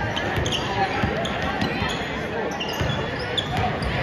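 A basketball being dribbled on a hardwood gym floor, bouncing repeatedly, with sneakers squeaking and spectators talking.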